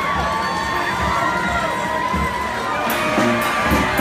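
A parade crowd cheering and shouting, with many high voices. Drum beats come in near the end.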